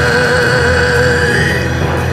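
Male rock vocalist belting one long held note with a slight vibrato, backed by orchestral strings and a steady low accompaniment; the note ends near the end.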